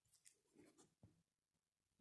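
Near silence, with a few faint short clicks and scratchy rustles.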